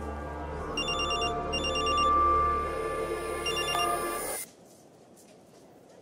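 Telephone ringing in repeated quick trilling bursts over a swelling music underscore. Both cut off suddenly about four seconds in.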